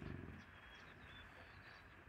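American bison giving one short, low grunt at the start, followed by faint bird chirps.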